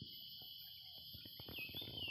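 Insects chirring in a steady, high-pitched drone, with a brief chirp about three-quarters of the way in.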